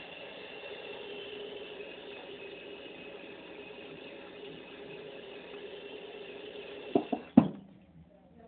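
Small electric motor of a makeup brush cleaning spinner whirring steadily, then stopping about seven seconds in, followed by two sharp knocks, the second louder.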